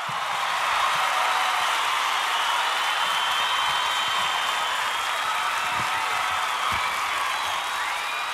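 Audience applauding and cheering: a steady wash of clapping with a few faint voices calling out.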